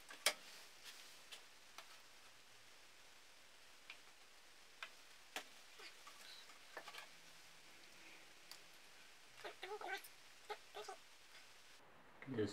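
Quiet room with scattered light clicks and taps from tools and fork parts being handled. The sharpest click comes right at the start, and a few more bunch together about ten seconds in.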